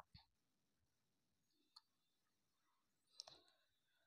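Near silence broken by a few faint, short clicks spread through the pause, two of them close together near the end.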